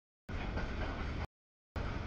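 Steady rumbling noise of a freight train's cars passing over a grade crossing, broken up by audio dropouts: it starts about a quarter second in, cuts to dead silence after about a second, and comes back near the end.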